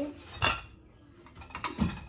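Knocks and clinks of household items as a woven storage basket is handled and set onto a pantry shelf: one sharp knock about half a second in, then a quick cluster of knocks near the end.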